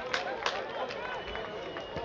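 Voices calling and shouting across an open football pitch, from players and a sparse crowd, with two sharp knocks within the first half second.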